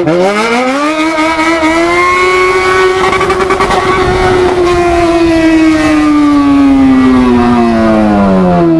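Yamaha XJ6 600 cc inline-four motorcycle engine revving hard as the bike accelerates. The pitch climbs quickly over the first two seconds, holds high and steady for several seconds, then slowly falls as the throttle eases near the end.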